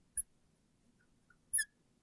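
Marker squeaking on a glass board during writing: short squeaks, a sharp one just after the start, two faint ones in the middle and the loudest about one and a half seconds in.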